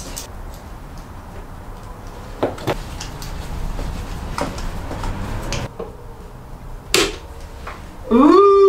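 A few scattered sharp clicks and knocks from handling lamp wires and spring-lever connectors, the loudest near the end, over a low steady hum.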